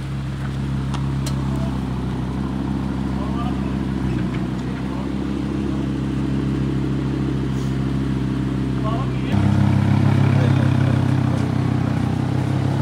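Lamborghini Huracán V10 engine running at low speed as the car creeps along, a steady low note that gets louder about nine seconds in.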